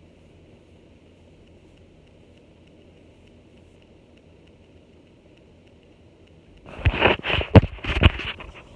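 Faint steady hum of a ceiling fan running, then about seven seconds in a burst of loud knocks and rustling as the recording phone is picked up and handled close to its microphone.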